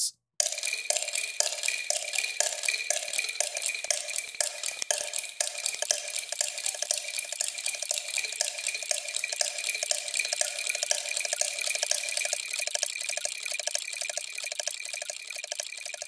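Sampled pocket-watch ticking from the Watchmaker sample library, several watch sounds layered into a fast, dense rhythmic pattern through EQ, delay and reverb. It sounds thin, with no bass, and starts about half a second in.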